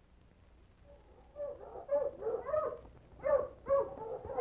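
A team of sled dogs yipping and barking in short, excited calls, starting after about a second of near silence; an old radio-drama sound effect.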